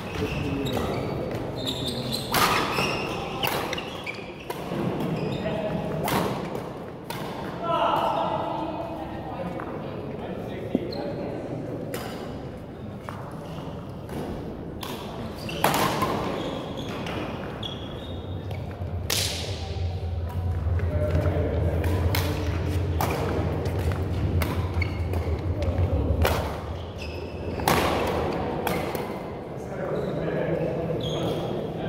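Badminton racket strings striking a shuttlecock during a doubles rally: sharp cracks at irregular intervals, echoing in a large hall, with voices underneath.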